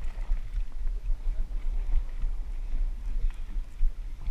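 Steady low rumble of wind buffeting an action camera's microphone on an open fishing boat at sea, with faint water and boat noise underneath.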